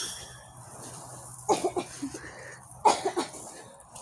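A boy coughing in two short fits, the first about one and a half seconds in, the second about three seconds in.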